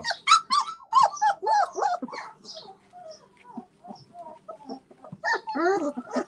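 Great Pyrenees puppies, two to three and a half weeks old, crying in a string of short, high, rising-and-falling whines and yelps, thickest in the first two seconds, thinner in the middle and picking up again near the end.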